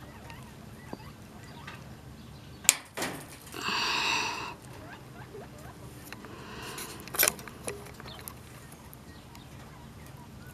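Wire cutters snipping through welded wire mesh, two sharp snips about five seconds apart, the first the loudest. Between them comes a short squawking, honk-like call lasting under a second, and a fainter one just before the second snip.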